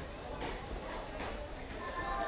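Passenger train rolling slowly along the platform, its wheels giving slow clacks over the rail joints, with a crowd's chatter behind.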